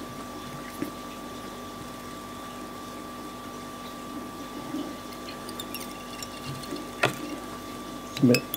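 Steady low hiss with a faint electrical hum, a few light ticks after about five seconds, and one sharp click about seven seconds in.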